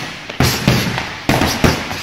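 Boxing gloves punching a long hanging heavy bag: four heavy thuds in two quick pairs, the first pair about half a second in and the second near the end.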